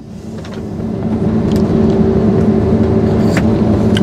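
New Holland combine harvester running under load while harvesting, heard inside the cab: a steady engine and machinery drone with a low hum, its level climbing over the first second and then holding.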